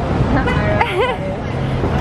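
City street traffic: a steady rumble of passing cars, with a short stretch of a person's voice a little way in.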